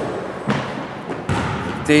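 A basketball bouncing on a hardwood gym floor, two thuds about a second apart, echoing in the large hall.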